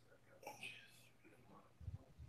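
Near silence, with a faint whispered voice about half a second in.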